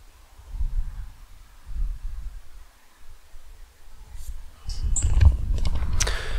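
Low rumbling on the microphone that comes and goes in swells, growing stronger in the last second and a half, with a few faint clicks near the end.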